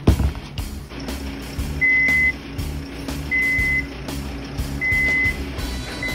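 Truck-mounted crane's warning buzzer beeping three times, each beep about half a second long and about a second and a half apart, over the steady hum of the crane's engine, with a knock at the start. The beeping is the crane's alarm that the swung load has reached the limit of its working range.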